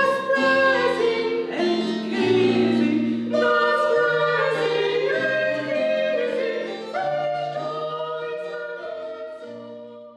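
Women's voices singing held notes together in harmony, over lower sustained notes, fading out near the end.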